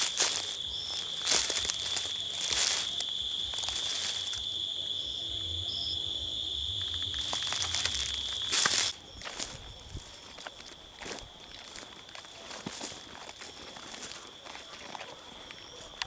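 Footsteps crunching through dry leaf litter and twigs, over a steady high-pitched insect trill. The footsteps fall much quieter about nine seconds in, leaving the insect trill.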